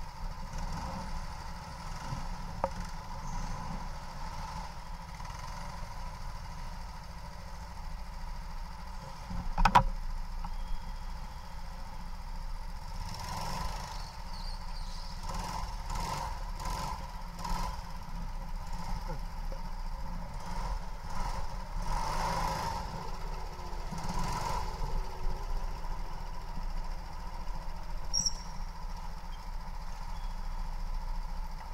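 Go-kart running on an indoor track, heard from on board as a steady low rumble with a constant mid-pitched drone. There is one sharp knock about ten seconds in, and a run of short rattly bumps through the middle stretch.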